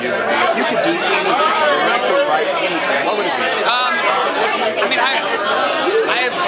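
Speech close to the microphone, over the chatter of a crowd.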